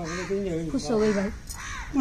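Indistinct voices of people talking, with a short arching call near the end.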